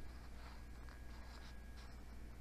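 Faint rustling of paper as the pages of a hardback book are handled and turned, over a steady low hum.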